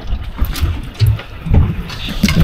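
A few dull thumps and knocks as a landing net holding a freshly caught snapper is lowered onto a boat's checker-plate deck.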